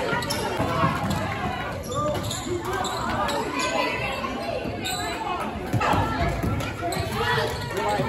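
Basketball bouncing on a hardwood gym floor during live play, with spectators talking and calling out over it, echoing in the large gym.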